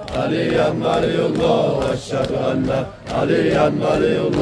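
Crowd of men chanting together in unison, a Muharram mourning chant, in three phrases broken by short pauses about two and three seconds in.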